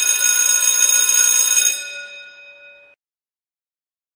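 A metallic bell ringing, a bright cluster of steady tones held for about two seconds, then dying away and cutting off abruptly about three seconds in.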